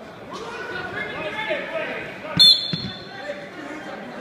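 A referee's whistle, one short, sharp blast a little past halfway through, signalling the wrestlers to start, over the chatter of voices in a gym.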